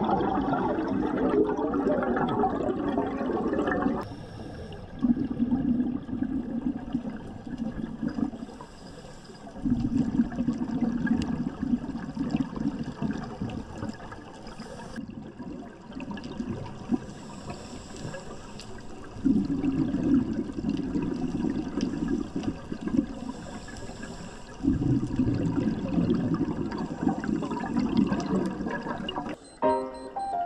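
Scuba regulator exhaust bubbles heard underwater: a diver breathes out in bubbling rushes a few seconds long, about five across the stretch, with quieter inhalations between them.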